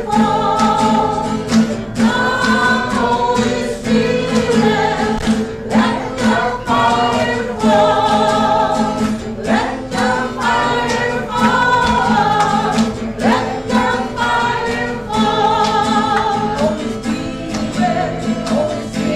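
A congregation singing a praise and worship song together, over a steady, rhythmic instrumental accompaniment.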